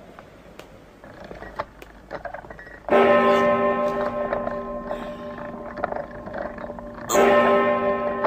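A large clock-tower bell struck twice, about four seconds apart. Each stroke rings on with several steady tones that slowly die away.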